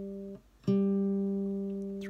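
Third (G) string of a classical guitar plucked upward with the index finger in a free stroke. A ringing note stops short about a third of a second in. The string is plucked again just under a second in and left to ring, slowly fading.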